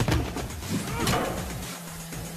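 A sharp hit or thud at the very start, followed by a few short grunts, over a low steady music drone.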